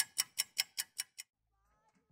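Sharp, evenly spaced ticking, like a clock, about five ticks a second, growing fainter and stopping a little over a second in.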